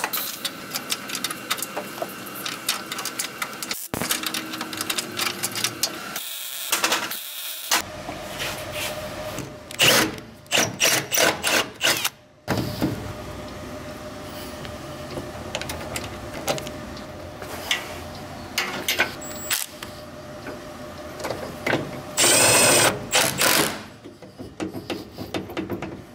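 Hand tools working bolts on a car's radiator support: a run of clicks, rattles and metal knocks, with abrupt breaks between short stretches. A cordless drill-driver runs for about a second and a half near the end.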